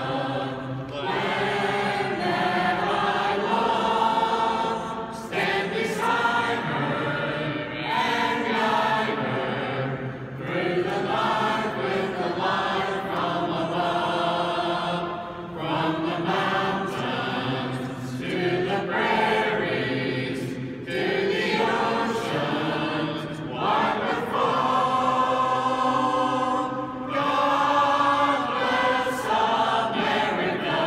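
A mixed group of men and women singing a patriotic song together, in phrases a few seconds long with short pauses for breath between them.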